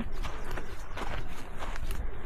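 Footsteps of a hiker walking on a sandy dirt and rock trail, about two to three steps a second, over a low rumble of wind or handling on the microphone.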